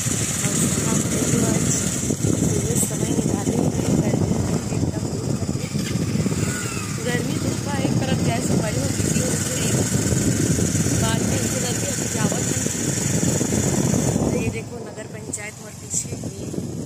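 Motorcycle engine running on the move, with wind buffeting the microphone; the noise drops away suddenly about a second and a half before the end.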